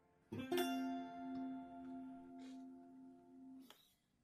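Electric guitar played clean: two notes plucked in quick succession, then left ringing for about three seconds before the sound cuts off suddenly near the end.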